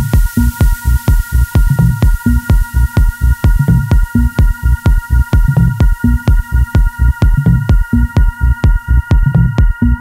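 Deep/tech house track playing in a DJ mix: a steady, driving kick-drum beat under a repeating bass line and sustained high synth tones. The highest sounds gradually fade away.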